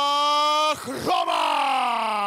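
A ring announcer calling out a fighter's name in long, drawn-out calls: one held note that breaks off just before a second, then a second long call sliding down in pitch.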